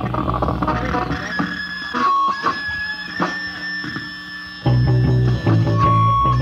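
A punk band's electric guitar and bass playing loose, unstructured notes on stage before the first song is counted in, recorded raw from the live show. Loud low held notes give way to a thinner, quieter stretch with a steady high tone, then the bass and guitar come back in loudly about three-quarters of the way through.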